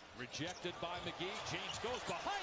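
Faint NBA television broadcast sound: a commentator talking over arena crowd noise, with a basketball being dribbled on the hardwood court.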